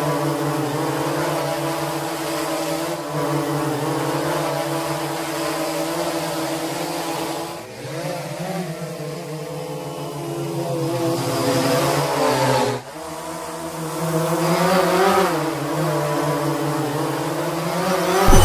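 Quadcopter drone motors and propellers buzzing: a steady hum of several tones that wavers up and down in pitch as the rotor speed changes, with a short sharp dip about two-thirds of the way through.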